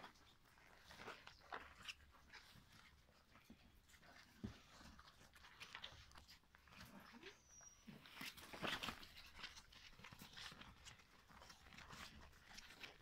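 Young setter-pointer mix puppies tussling on a quilt: faint rustling and scrabbling of paws on fabric, with a few small whimpers. It is busiest a little past the middle.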